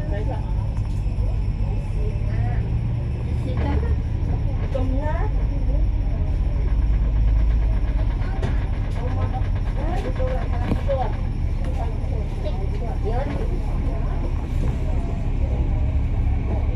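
Steady low engine rumble of a KMB Alexander Dennis Enviro500 MMC double-decker bus, heard from inside on the upper deck as the bus creeps forward in traffic. The rumble swells a little midway. Faint voices sound in the background.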